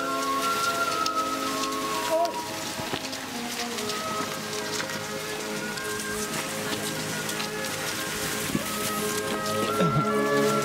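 A dense, rain-like crackle of many ski poles planting and skis sliding on snow as a large field of cross-country skiers moves off together, under background music with sustained tones.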